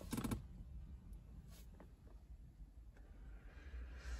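Quiet parked-car cabin background with a low rumble and faint rustling and a few light clicks as a handheld phone is moved around. A brief bit of voice is heard right at the start.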